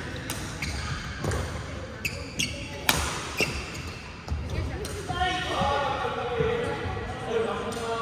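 Badminton rackets sharply striking the shuttlecock several times during a doubles rally, with quick footwork on the court. About five seconds in, players' voices call out as the rally ends.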